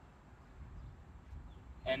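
Quiet outdoor background with a low, steady rumble, as of wind or distant traffic, and no distinct sound event.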